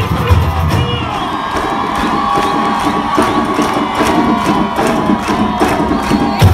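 Crowd cheering and whistling over a samba-style carnival drum corps: the deep bass drums drop out about a second in, leaving scattered lighter percussion hits under the cheers.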